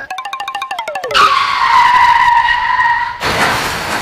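Comedy-show sound effect: a fast rattle for about a second, then a loud screech like skidding car tyres lasting about two seconds, which breaks into a rush of noise.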